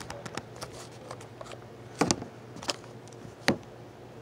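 Gas airsoft pistol fitted with a silencer firing: two sharp pops about a second and a half apart, with a few light clicks of handling between.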